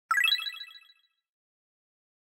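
Intro chime sound effect: a quick run of bright bell-like notes rising in pitch, fading out within about a second.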